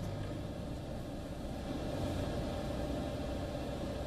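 Steady low hum with an even hiss over it, without any distinct events.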